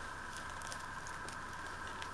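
Faint, light rustling and ticking of a tissue-paper-wrapped package under a hand, over a steady electrical hum.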